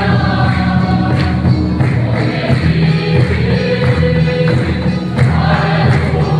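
A congregation singing a hymn together, accompanied by an electronic keyboard and a steady drum beat.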